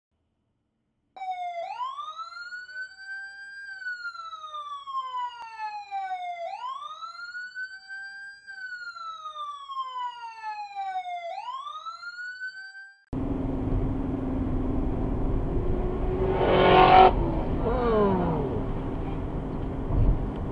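Police siren wailing in slow cycles: the pitch rises quickly, holds, then falls slowly, about every five seconds, three times, with no road noise under it. It cuts off abruptly about 13 s in. Steady road and car noise inside a moving car follows, with a loud swell in the middle and a falling pitch just after.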